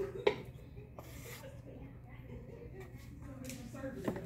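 Electric pottery wheel running with a low steady hum while a tool scrapes excess clay off a faceted bowl in faint rubbing strokes; a sharp tap about a quarter second in, and a fainter one about a second in.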